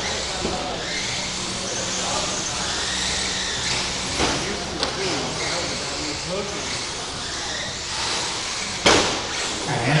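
Electric 1/10-scale 2WD short course RC trucks racing on an indoor track: a steady mix of motor whine and tyre noise echoing in a large hall. A single sharp knock comes near the end.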